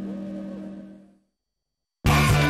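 Television ad-break bumper jingle: held musical tones fading out, dying away to silence a little over a second in.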